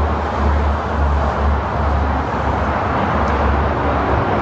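The air-cooled flat-six of a Porsche 911 Carrera 2 (964) idling steadily, a constant low rumble.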